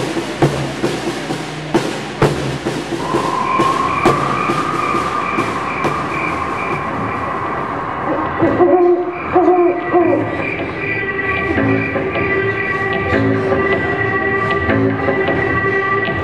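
Snare drum and bass drum playing a quick beat at first. From about three seconds in, the strikes thin out and music with long held tones takes over. After about eight seconds it moves into a fuller passage of sustained notes.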